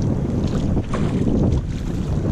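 Wind buffeting the microphone in a steady low rumble, with choppy lake water lapping around a small boat.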